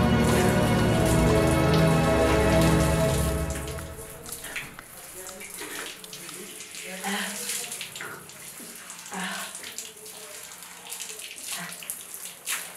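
Background music that fades out about four seconds in, then water from a tap splashing irregularly as hands cup it and splash it onto a face.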